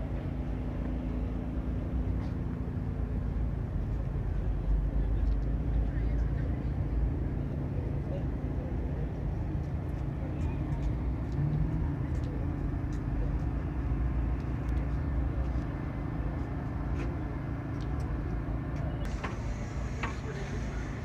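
Outdoor market background: a steady low rumble with a faint hum, with indistinct voices underneath.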